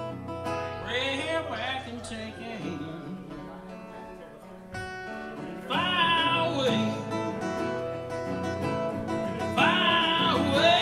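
Live music on electric guitar: lead notes bending in pitch over a held low note, which fades out about three seconds in and comes back louder near six seconds.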